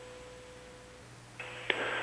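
Faint hiss of an open UHF air-to-ground radio channel between unanswered comm checks to the space shuttle Columbia: a thin steady tone for the first second, then a band of static comes up about a second and a half in, with a single click.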